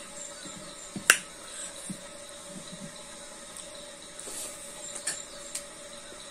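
Close-up mouth sounds of someone eating by hand: chewing and lip smacks, with one sharp click about a second in and a few smaller clicks later, over a steady faint hum.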